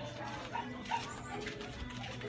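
A dog barking briefly, twice, over faint background voices.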